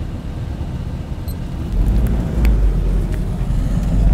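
Low rumble of vehicle engines as cars move off along the track beside running racing camels, growing louder about two seconds in.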